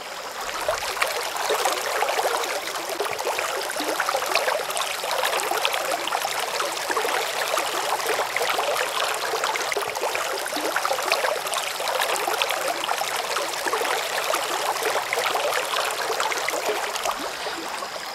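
Stream water running into a small rocky pool: a steady trickling rush with fine crackle, all in the upper range with no low rumble.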